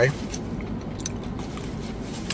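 A man chewing a mouthful of peach cobbler, with a few faint mouth clicks over a steady low hum inside a parked car.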